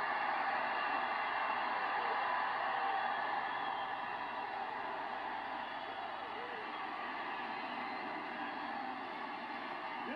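Football stadium crowd cheering a touchdown, a steady mass of voices that eases a little about four seconds in, heard through a TV broadcast's sound played from the set.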